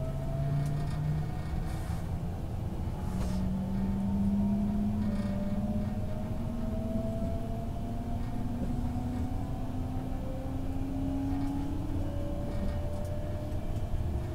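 Cabin sound of a JR Central 383 series electric train accelerating out of a station: the traction motors' whine climbs steadily in pitch as it gathers speed, over a low rumble of the wheels on the rails.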